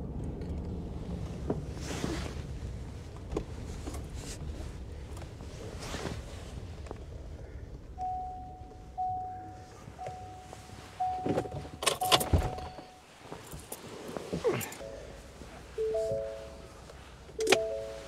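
Truck running under way, heard from inside the cab, with a steady low rumble. About eight seconds in, a run of electronic beeps starts at about one a second as the truck pulls up and parks, with a sharp thunk around twelve seconds. Near the end a few shorter chimes sound at two or three lower pitches.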